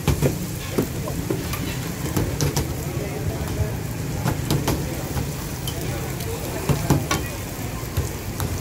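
Parathas frying on a large flat griddle with a steady sizzle, while a metal spatula clicks and scrapes against the griddle surface at irregular moments as they are turned.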